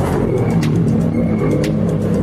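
Rally car engine running loud and revving, the pitch wavering up and down, with music underneath.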